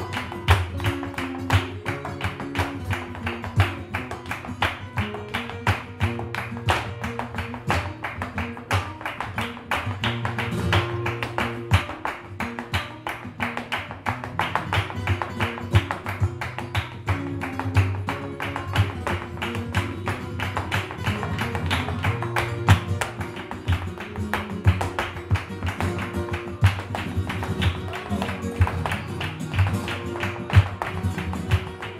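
Live flamenco: a dancer's shoe footwork (zapateado) rapping out quick, sharp taps on the stage over two flamenco guitars strumming and picking.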